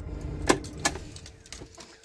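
Diesel engine of a Fiat Ducato-based motorhome idling just after start-up, heard as a low rumble inside the cab that grows fainter in the second half. Two sharp clicks come about half a second and just under a second in.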